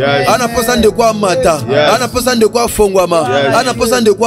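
A worship chant: a voice chanting rhythmically in African Christian worship over a steady musical backing, with no break.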